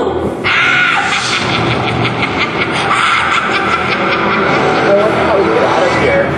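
A stage fire-and-smoke effect goes off with a sudden whoosh about half a second in, followed by a steady roaring hiss of flame and smoke. A voice comes in near the end.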